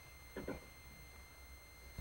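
Near silence: faint room tone with a steady faint high-pitched tone running underneath, and one brief faint sound about half a second in.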